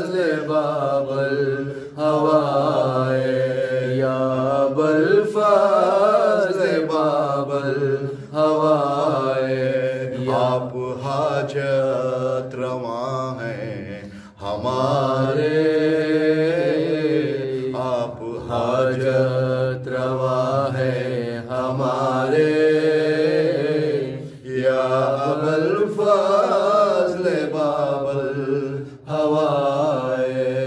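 A man singing an Urdu manqabat (devotional praise poem) solo in long, ornamented held notes with a wavering pitch, breaking off briefly for breath a few times.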